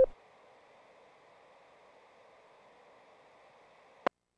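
Near silence: a faint steady hiss, broken by one short click near the end.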